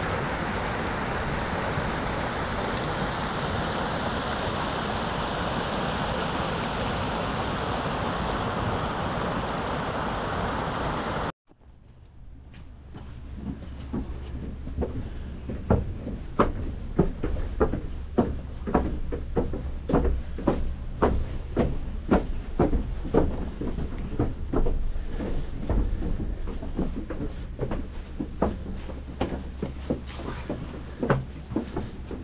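Water rushing over a small dam's overflow, a steady rush of white water over rocks. After a sudden cut about eleven seconds in, footsteps on wooden stairs follow: irregular knocks on the boards, about one to two a second.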